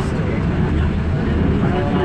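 MBTA Green Line light-rail train running through the subway tunnel, heard from inside the car as a loud, steady low rumble of wheels and running gear.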